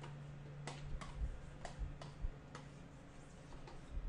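Faint, irregular clicks and taps from the input devices of a computer during digital painting, roughly one every half second. A low steady hum runs underneath and stops about a second in.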